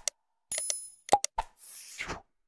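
Interface sound effects for a subscribe-button animation: a mouse click, a short bright bell ding, two quick pops, then a rising whoosh near the end as the graphic clears.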